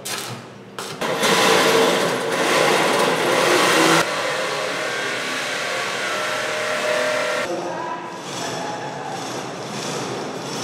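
Steady construction-site machine and tool noise, loudest for the first few seconds. It changes abruptly about a second in, again about four seconds in, and near eight seconds.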